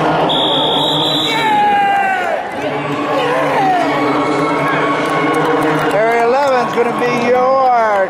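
Scoreboard buzzer sounding one steady high tone for about a second near the start, signalling the end of the wrestling match. Crowd noise and cheering follow, with voices shouting out in the second half.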